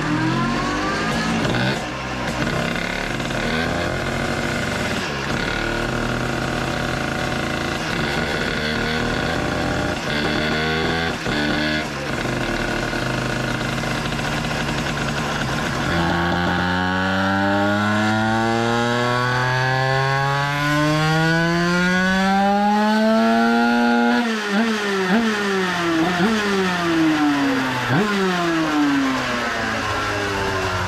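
Two-stroke 100cc 2Fast-kitted Minarelli AM6 motard engine running on a roller dyno with a Derbi exhaust fitted. It holds fairly steady revs, then about halfway through makes a full-throttle pull, the revs climbing steadily for about eight seconds before the throttle is shut suddenly, followed by several quick revs up and down.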